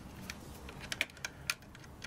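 Small, irregular plastic clicks and ticks as a thin actuator wire is pushed firmly into a push-in terminal port of an underfloor-heating controller, which grabs hold of the wire.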